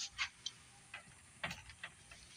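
A few faint, irregular light clicks and taps, like small hard parts or the phone being handled.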